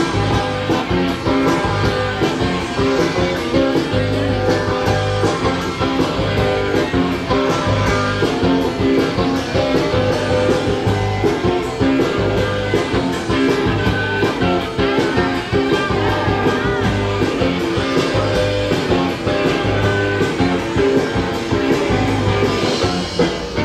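Rock band playing live, with guitars, bass and drums keeping a steady beat; no vocals are picked up.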